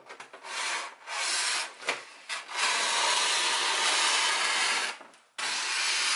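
Scissors cutting a sheet of thick craft wrapping paper: a few short strokes, then a long steady cut that breaks off briefly about five seconds in and starts again.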